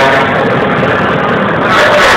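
Race trucks driving past on the track, with a truck horn sounding over the engine noise.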